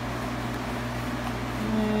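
A steady low hum of kitchen machinery, like a ventilation fan or refrigeration unit. A man's voice begins near the end.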